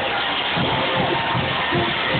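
A marching band playing, sustained brass tones over a low, repeated beat.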